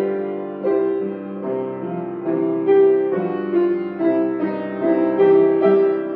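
Solo piano playing a slow hymn in full chords, with a sustained melody over moving lower notes.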